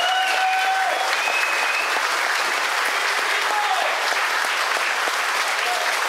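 An audience applauding steadily, a room full of hands clapping.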